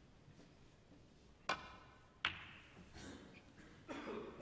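Snooker break-off: a sharp click of the cue tip striking the cue ball, then under a second later a clack as the cue ball hits the pack of reds. A further knock of balls follows near the end.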